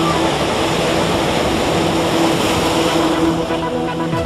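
Ocean surf breaking in a steady rush of waves over rocks, with sustained background music tones underneath.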